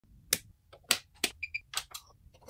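Switches being flipped: four sharp clicks spread across the two seconds, with two short high electronic beeps between the third and fourth clicks.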